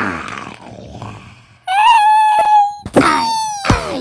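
A high-pitched voice wailing for a cartoon character: a rough cry at the start, then a loud held wail about two seconds in, then a second cry whose pitch slides down near the end.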